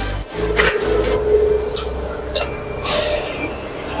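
Sheet-metal guillotine shear running: a steady machine hum with a held tone in the first half and a few short sharp knocks.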